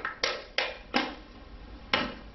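Sharp taps and knocks of a plastic water bottle and a clear plastic cup being handled and set down on a tabletop: three quick taps in the first second, another near the end.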